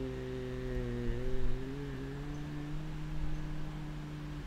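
A man's voice holding one long, low hum, a thinking filler like "mmm", slightly wavering and stepping a little higher in pitch about two seconds in.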